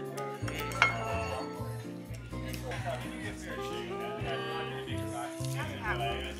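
Background music throughout, with metal cutlery clinking once sharply against a ceramic plate about a second in, and lighter knife-and-fork sounds as fried chicken is cut.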